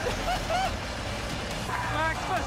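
Men shouting and screaming in jubilation: several short, high yells, more of them near the end, over a low steady engine rumble.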